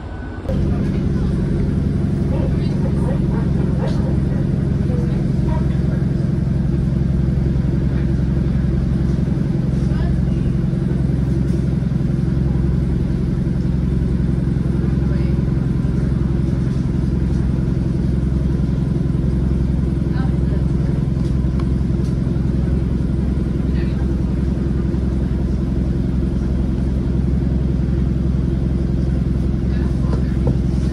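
Diesel train's running noise heard from inside the carriage: a steady, loud engine drone with a low hum, and a few faint clicks from the wheels on the track.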